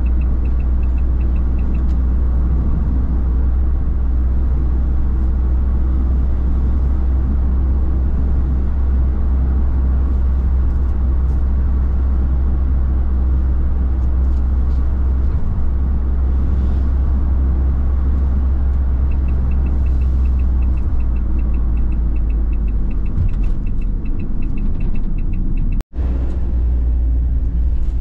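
Steady low drone of a Renault delivery van's engine and tyres, heard inside the cab while cruising at highway speed. A faint, fast ticking comes and goes, and the sound drops out for an instant near the end.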